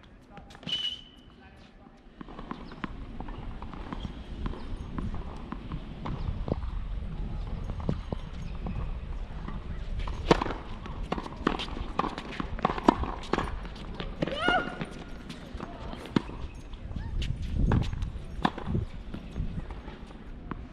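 Tennis ball struck by racquets and bouncing on a hard court during a rally: a string of sharp pops, most of them in the second half.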